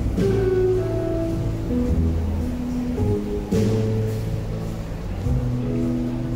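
Jazz trio playing: an archtop guitar plays a melody over walking upright double bass notes and a drum kit, with cymbal strikes at the start and about three and a half seconds in.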